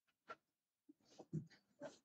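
A few faint, short bumps and rustles picked up by a lectern microphone as someone steps up to it and handles it, with near silence between them.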